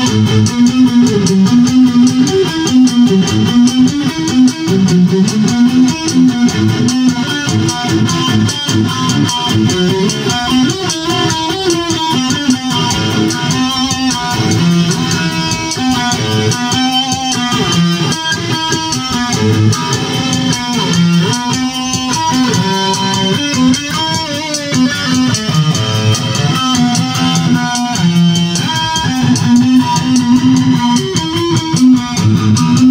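Instrumental music led by an electric guitar playing melodic lines over a bass line, continuous throughout.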